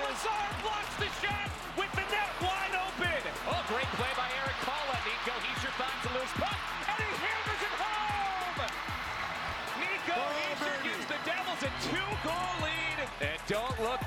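Hockey broadcast audio: a voice over background music, with some dull thuds mixed in.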